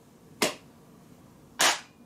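Two sharp hand claps, a little over a second apart, the second louder.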